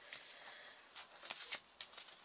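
Faint handling of a sticker sheet and planner pages: a few light ticks and soft rustles, mostly in the second half.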